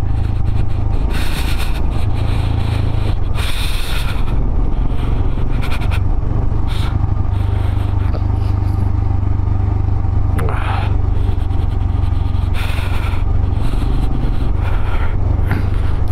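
Motorcycle engine running steadily while riding, a constant low drone, with several short gusts of wind rushing over the microphone.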